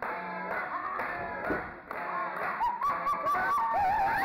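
High-pitched human yelling, several voices overlapping. The second half holds long drawn-out shouts.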